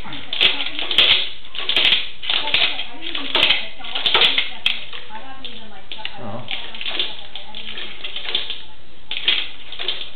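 Rapid, irregular clattering clicks from a sewer inspection camera's push cable as the camera head is jabbed back and forth against a root blockage in the sewer lateral. The clatter thins out about halfway through and comes back in a short burst near the end.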